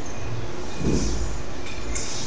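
Steady low rumble of background noise, with a faint short sound about a second in.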